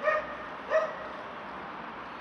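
A dog barking twice, two short calls less than a second apart.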